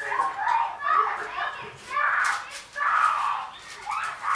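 A high voice in short phrases, with its words not clear, and a few light clicks.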